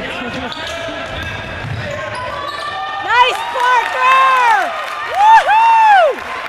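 Basketball shoes squeaking on a hardwood gym floor: several loud, sharp squeaks in the last three seconds, each a quick rise and fall in pitch. Under them are the ball's dribbling and the murmur of the gym.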